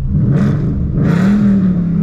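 Ford Mustang's V8 engine revved twice in neutral, heard from inside the cabin: a quick rise in pitch, a dip, then a second rise that is held a moment before easing back down.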